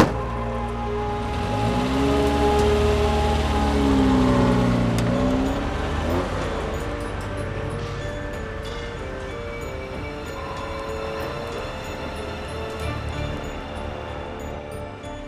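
Background music, with a car's engine revving under it as the car pulls away: its pitch rises and falls over the first few seconds, then fades. A sharp thud at the very start.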